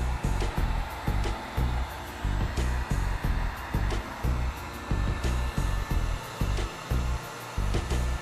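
Handheld heat gun blowing steadily on its medium setting, an even rushing hiss, with background music's steady bass beat underneath.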